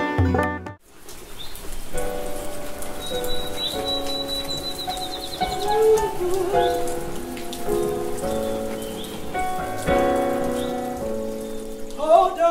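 Plucked-string music stops within the first second, and then steady rain falls. Soft sustained musical chords play over the rain, and a bird trills high and rapid from about three to six seconds in.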